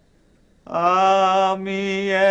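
A man singing a slow Bengali song without instruments. After a short silence he starts a long held note about two-thirds of a second in and sustains it with a slight waver.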